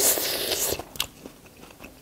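Close-miked eating sounds: a loud, noisy bite and chew in the first second, then a sharp click and quieter chewing.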